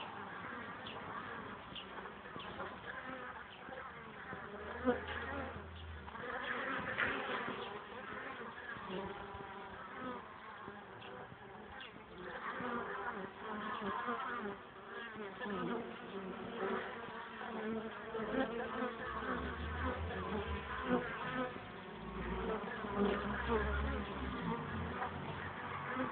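Honeybees buzzing at a hive entrance: many bees flying in and out, their buzzes overlapping and wavering in pitch, with a few short low rumbles now and then.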